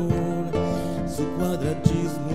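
Live acoustic band music: cavaquinho and acoustic guitar playing with hand percussion. A sharp percussion hit stands out near the end.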